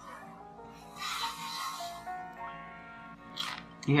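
Dehydrated smelt being bitten and chewed with a crunch, loudest about a second in, with a shorter burst of noise near the end. Quiet background music with held notes plays underneath.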